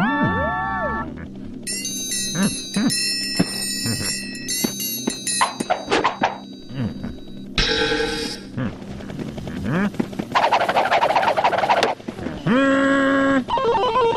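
Cartoon soundtrack of playful music and sound effects. High chiming notes, clicks and sliding tones come in the first half, then two noisy bursts in the second half, with short wordless character sounds.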